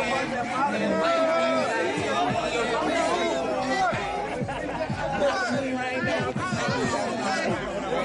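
Several people talking over one another, with no clear words.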